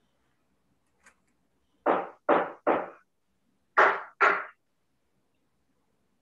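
Five quick knocks: three in a fast row, then a short pause and two more. Each knock is sharp and dies away quickly.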